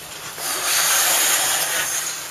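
Speed skate blades scraping across the ice: a steady hiss that starts about half a second in and lasts about a second and a half.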